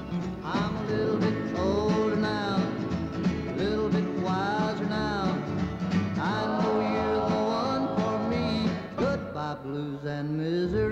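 Country song with a male lead voice, backed by strummed acoustic guitars and a plucked upright bass; the singer holds one long note from about six seconds in.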